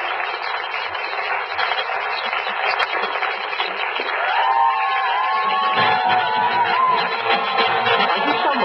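Background music over a crowd's cheering and chatter, with a melodic line coming in about four seconds in.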